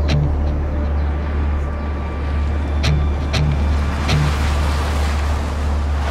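A few cars driving along a dirt road, their engines and tyres growing louder from about halfway through as they approach. Under them run a steady deep drone and a few sharp hits.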